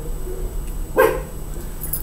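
A dog gives a single short bark about a second in.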